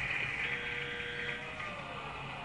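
Budgerigars chattering steadily over a low hum, with one short held note about halfway through.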